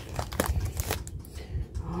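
A few light rustles and taps from hands handling a cardboard mailing box in a plastic mailer, clustered in the first second; a voice begins at the very end.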